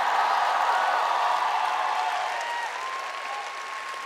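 Large audience applauding, the clapping dying away over the last second or so.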